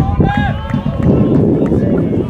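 Players' voices shouting on a football pitch, with one short, high call about half a second in, over a steady low rumble.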